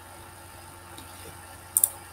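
Quiet room tone with a faint steady hum, then a brief sharp double click near the end: a computer mouse button pressed and released.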